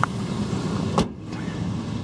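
2001 Dodge Ram 1500's 3.9-litre V6 idling steadily, with a short click at the start and a sharp knock about a second in.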